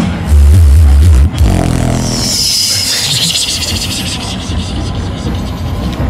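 Vocal beatboxing: a heavy, deep bass note held for about a second near the start, then a long high hissing sweep.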